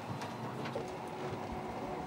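Quiet room tone: a faint steady hum with a few soft clicks.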